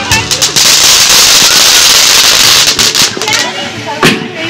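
Ground fountain firework spraying sparks with a loud, steady hiss, after a few sharp crackles at the start. People's voices come in near the end as the hiss dies down.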